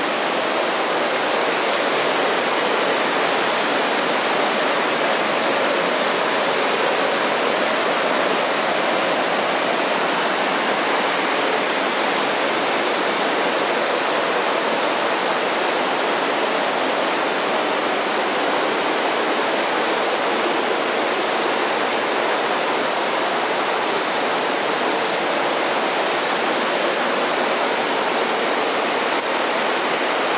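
Mountain stream pouring over small stepped weirs and rushing through a rocky bed: a loud, steady water rush.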